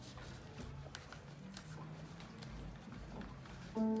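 Quiet room tone with faint low hum and small clicks, then a grand piano begins playing near the end, opening with a loud chord and ringing notes.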